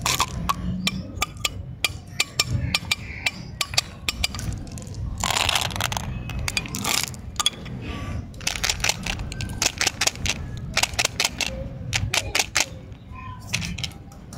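Hard plastic umbrella-shaped candy containers handled and clicked open, with many sharp plastic clicks and jelly beans rattling inside. A denser rattle comes from about five to seven seconds in.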